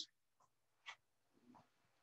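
Near silence: room tone, with a faint short click just before a second in.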